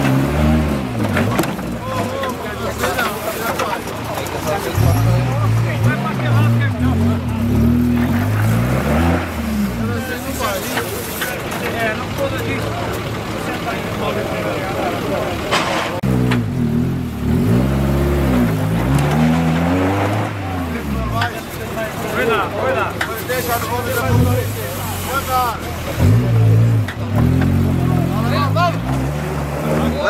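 Engine of a modified off-road 4x4 revving hard in repeated bursts as it claws through a steep dirt pit, its pitch climbing and falling again several times.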